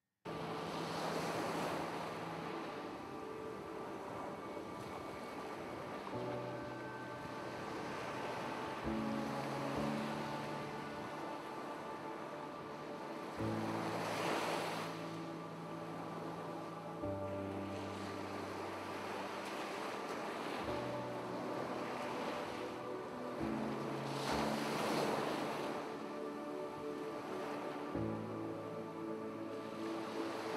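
Calm background music of sustained chords that change every few seconds, laid over the sound of ocean surf that swells and fades several times.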